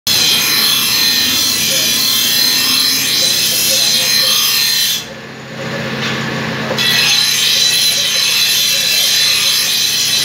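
Motor-driven grinding wheel sharpening the edge of a large steel knife: a loud, harsh, steady grinding. About halfway through the blade comes off the wheel for roughly two seconds, leaving only the hum of the motor and wheel running free, then the grinding starts again.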